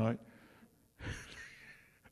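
A single sharp breath close to the microphone about a second in, fading away over most of a second.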